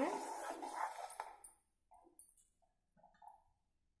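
A steel ladle stirring and scraping thick curry in a metal kadhai, with one sharper clink about a second in. It stops after about a second and a half, leaving only a few faint brief sounds.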